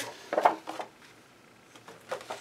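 Sheets of paper and cardstock handled by hand and slid into place between a book's pages: a brief rustle and shuffle in the first second.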